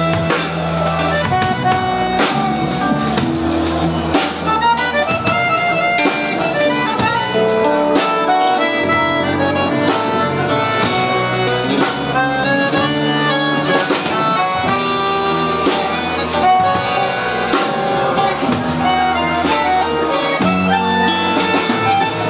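Live band instrumental break: a chromatic button accordion plays the lead melody over electric guitar and a drum kit.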